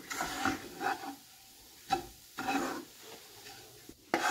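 Wooden spatula stirring and scraping a crumbly flour mixture around a nonstick pan, in several irregular strokes with short pauses between.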